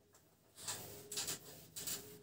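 A duster wiping marker writing off a whiteboard: after a moment of quiet, about three quick scrubbing strokes.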